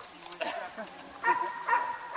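A high-pitched whine at a steady pitch, starting a little past halfway and held for most of a second with a few louder pulses, over faint background voices.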